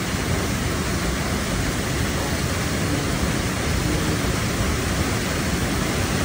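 Sol Duc Falls, a waterfall pouring in several channels into a narrow rock gorge, making a steady, even rush of falling water.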